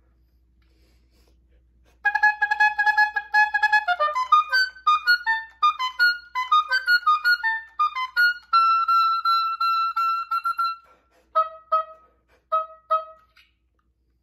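Solo oboe playing: after about two seconds of quiet, a held note, then a quick run of notes, a long high held note, and a few short detached notes near the end.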